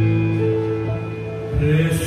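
Electronic keyboard playing held chords over a low sustained bass note. A brief hiss breaks in near the end as the chord changes.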